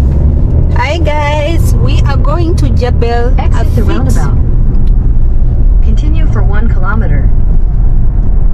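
Inside a moving car: a steady low rumble of road and engine noise, with a person's voice in unclear words from about a second in and again near six seconds.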